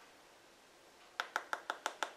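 A quick run of about six light, sharp taps in under a second, typical of an eyeshadow brush being tapped against the edge of a palette to knock off excess powder.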